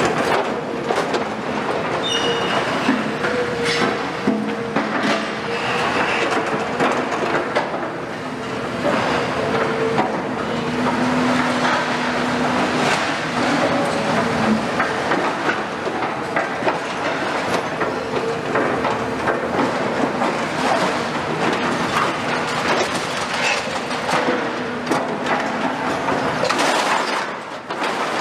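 Demolition excavators handling scrap steel: a continuous clatter and scraping of steel beams and roof sheeting as they are dragged, dropped and cut, with many sharp metal knocks. Under it runs the steady drone of the machines' diesel engines and hydraulics.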